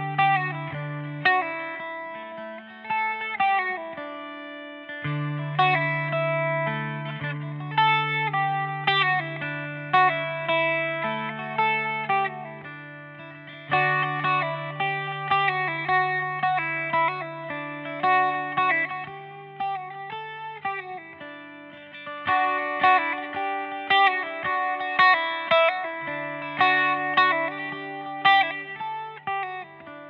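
Eastwood MRG electric octave mandolin with flatwound strings, tuned GDAE, picked through an Irish slide dance tune. A quick melody in a lilting rhythm runs over a sustained low note that drops out briefly now and then. The tune fades out at the end.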